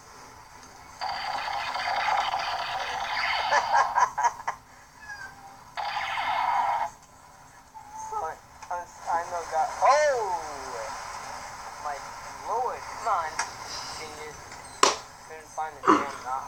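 An old home video played back through a smartphone's small speaker: several seconds of rushing noise with clicks in it, a shorter burst of the same, then voices.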